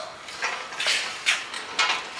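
A few short scuffs and rustles of handling, about four in two seconds.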